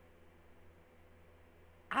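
Quiet room tone: a steady low hum and faint hiss with no distinct events, until a man's voice starts right at the end.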